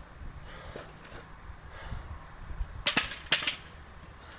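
Metal hardware clattering at a storage-unit door: two quick bursts of sharp clicks and rattles, about three seconds in and again half a second later.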